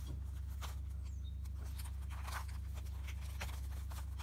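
Faint, irregular clicks and rasps of a plastic Rubik's Cube's layers being turned by hand, over a steady low hum.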